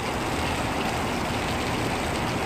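Steady hiss of small deck water jets spraying and splashing, over a low rumble.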